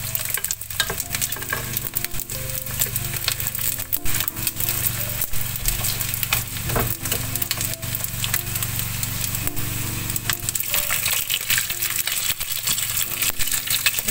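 Chicken feet frying in hot oil in a nonstick wok, a steady dense crackling sizzle, with wooden chopsticks stirring and turning the pieces. This is the second frying, done to make the feet crisp.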